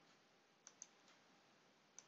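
Computer mouse button clicking: two quick clicks about two-thirds of a second in and another click at the very end, amid near silence.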